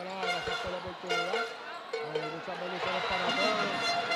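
Basketball arena during live play: crowd noise with steady, held horn-like tones from the stands, and a few low thuds of the ball bouncing on the court within the first second and again near three seconds.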